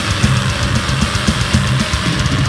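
Metalcore band playing: distorted electric guitars and bass over a drum kit, with a dense, driving low end and steady cymbal hits.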